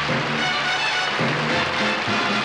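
Instrumental music from a show band playing a bridge between two songs of a medley, with a bass line moving every half second or so and no voices.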